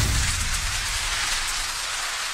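Rushing-wind sound effect: a steady hiss with a low rumble at its start that eases off, running without a break.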